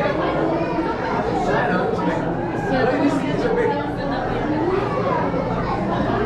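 Indistinct chatter of many people talking at once, a steady babble of voices in which no single voice stands out.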